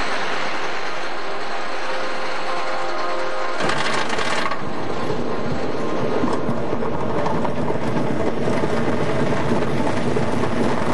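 Lightning Racer's wooden roller coaster train running on its track with a steady mechanical clatter. A short hiss comes about three and a half seconds in, and after it the rattling gets heavier and lower.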